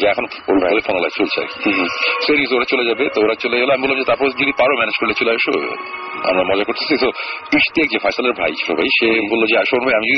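Continuous talking heard through an FM radio broadcast, with the thin, narrow sound of a radio recording.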